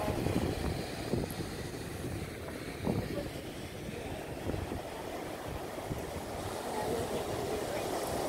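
Steady low rumble of wind on the microphone mixed with the wash of surf breaking on the beach.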